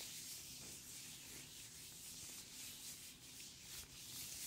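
Latex-gloved hands rubbing against each other close to a microphone: a soft, steady rustling.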